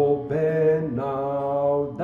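A man's voice singing a hymn in long held notes, moving to a new note about a third of a second in and again about a second in.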